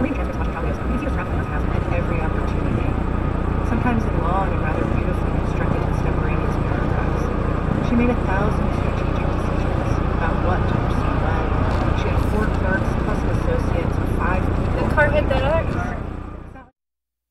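Steady road and engine noise of a car driving at highway speed, with a voice talking faintly over it.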